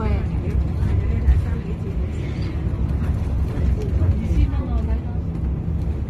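Steady low road and engine rumble inside a moving vehicle cruising along a highway.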